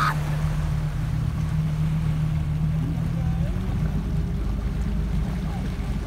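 Motorboat engine running steadily under way, with water rushing past the hull; the engine note steps up slightly a little past halfway.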